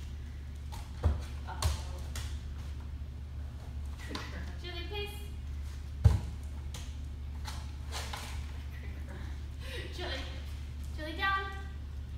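A pit bull moving on a leash on a rubber training floor, with a few dull thuds. The loudest comes about six seconds in as the dog jumps up on the handler. A steady low hum runs underneath.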